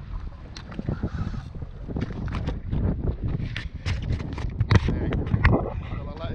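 Water slapping and splashing against the side of a small fishing boat: an irregular run of sharp slaps and knocks over a low rumble, busier in the second half.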